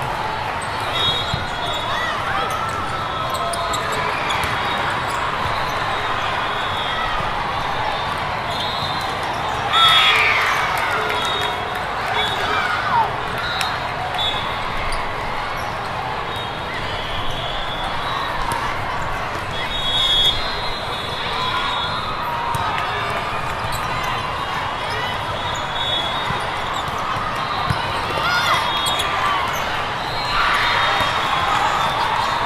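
Busy din of a large tournament hall during volleyball play: many voices chattering and calling, with sharp slaps of volleyballs being hit and bouncing on the floor. There are louder moments about ten and twenty seconds in.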